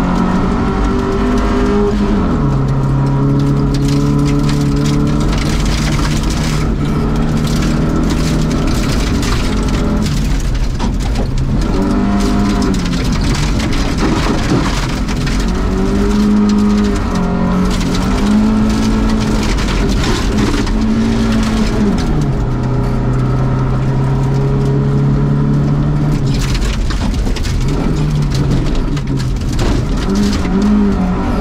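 Volvo 240 rally car's engine heard from inside the cabin. Its pitch holds steady for several seconds at a time, then steps up or down as the revs change, over a constant low rumble.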